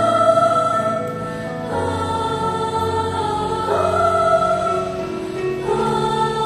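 Choir singing in parts, holding long chords that move to a new chord about every two seconds.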